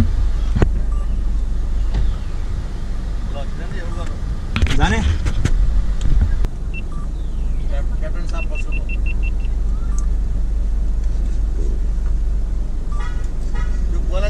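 Steady low rumble inside a stationary car's cabin, with voices briefly about five seconds in and a quick run of about eight short high beeps between eight and nine and a half seconds in.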